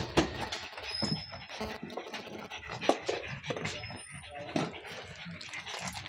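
A pug dog breathing heavily and making small noises while on a leash, with a couple of sharp knocks, the first just after the start and the second about three seconds in.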